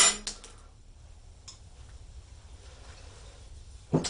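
Steel wrenches clinking against a nut and bolt as the nut is worked loose: a sharp clink at the start and a few lighter ones just after, a faint tick about a second and a half in, then faint room noise until one more clink at the end.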